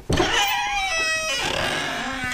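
A door squeaking open on its hinges: a sudden start, then a squeaky creak with several held and sliding pitches for about a second and a half, fading away.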